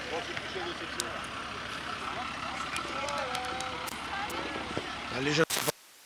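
Distant people talking over a steady background noise, with a few light clicks. Just before the end a brief louder sound, then the sound cuts out abruptly.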